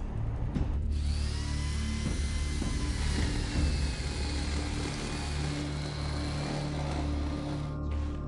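A small power tool running steadily as it chips away at the rock around the fossil, starting about a second in and stopping just before the end, over a low music bed.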